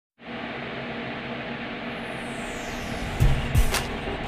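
Old-film countdown intro effect: a steady film-projector hiss with two low thumps a little after three seconds in and a sharp click just before the end.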